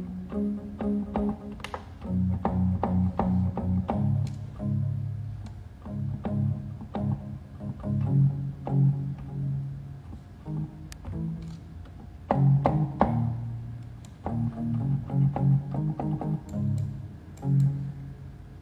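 Electronic keyboard played one-handed: a string of separate low notes picked out one after another, some held for a second or so, with the clack of the keys audible at each press.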